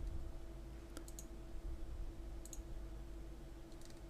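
Computer mouse clicking a few times, in short clusters about a second, two and a half seconds and nearly four seconds in, over a faint steady hum.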